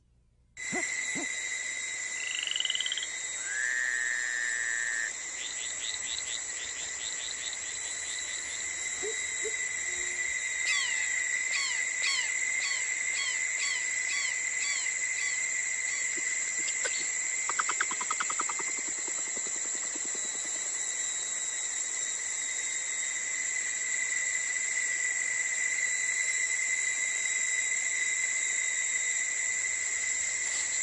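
Tropical rainforest chorus of frogs and insects: a steady high trilling drone, with rapid pulsed calls and short falling chirps standing out over it during the first twenty seconds. It begins after a moment of silence.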